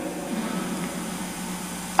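Steady background hum and hiss of a large church interior heard through the microphone during a pause in speech, with the echo of the last spoken words dying away in the first half-second.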